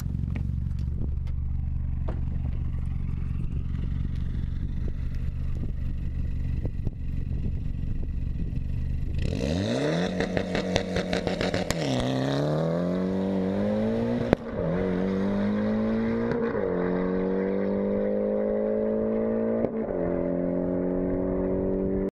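Tuned Mitsubishi Lancer Evolution X on E85, its turbocharged 2.0-litre four-cylinder idling for about nine seconds, then launching hard and accelerating. The engine note climbs through the gears and drops back at four upshifts.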